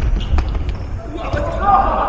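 A futsal ball kicked and bouncing on a wooden sports-hall floor, a few sharp thuds in the first second, with a player's loud shout in the second half.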